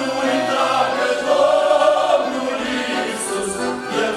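Male vocal group singing a Romanian Christian hymn in multi-part harmony.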